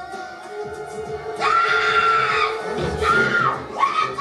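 Film soundtrack music with steady held tones. About a second and a half in, a high voice cries out in a long held cry, then a shorter one about three seconds in.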